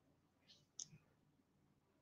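Near silence: room tone, with one faint short click a little under a second in.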